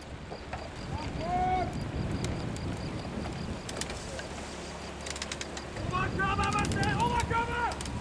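Voices shouting long, drawn-out calls, once about a second in and several times in the last two seconds, over a steady low rumble.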